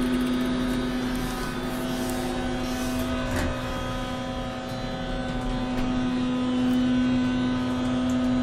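Otis hydraulic elevator running, heard from inside the cab: a steady hum with a low rumble under it. A wash of noise rises over the first few seconds.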